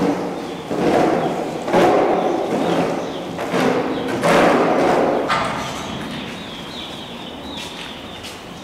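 Farm livestock: a few noisy bursts of about a second each in the first five seconds, then quieter.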